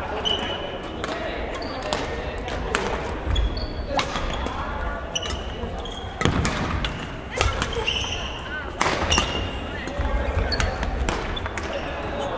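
Badminton rally in an echoing sports hall: rackets hitting the shuttlecock in sharp cracks at irregular intervals, with sneakers squeaking and thudding on the wooden court floor.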